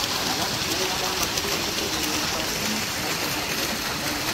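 Fountain jets splashing steadily into a pool, a constant rush of falling water, with faint voices in the background.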